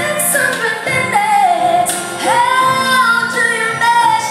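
A female vocalist singing live with a band, holding a long note from a little past two seconds in.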